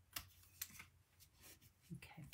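Small scissors snipping a thin strip of cardstock: a few faint, short clicks of the blades.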